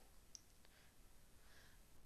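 Near silence: faint room tone with two faint clicks in the first second.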